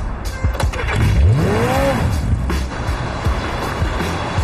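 A motorcycle engine revving up hard and dropping back, about a second in, over background music with scattered sharp hits.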